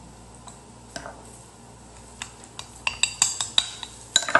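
Metal spoon clinking and scraping against a ceramic bowl and baking dish while spooning a thick paste into the dish. A couple of faint taps at first, then a quick run of sharp clinks in the second half.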